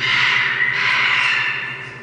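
Scarlet macaw giving one loud, harsh squawk that lasts about a second and a half and then fades.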